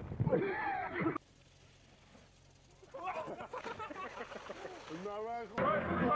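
People's voices shouting and exclaiming, broken by a sudden drop to low background noise from about one to three seconds in; voices come back and rise into a high, drawn-out cry near the end.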